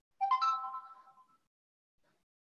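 An electronic notification chime: a short bright ring of several tones sounding once, entering in quick succession and fading within about a second.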